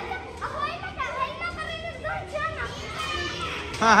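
Several children's voices talking and calling over one another as they play.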